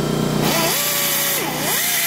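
Power drill fitted with a spot-weld drill bit cutting out a spot weld in steel car-body sheet metal. About half a second in, the bit bites into the steel with a loud grinding hiss and a squealing tone that holds, then dips and rises.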